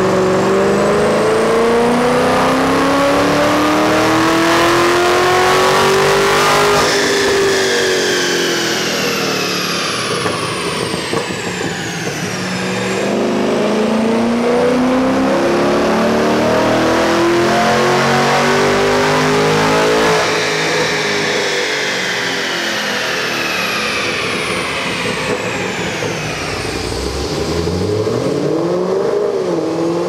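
Heads-and-cam 6th-gen Camaro V8 making two full-throttle dyno pulls through its Kooks headers and Corsa exhaust. Each pull rises steadily in pitch for about seven seconds, then falls away as the car coasts down. A couple of short revs come near the end.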